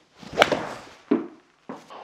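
Golf iron swung at a ball on a hitting mat: a short swish of the downswing, then one sharp crack of impact just under half a second in that dies away quickly. A second, duller thump follows about a second in.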